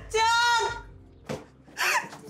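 A woman crying out in distress: a high, drawn-out wail of about half a second, then a shorter cry near the end.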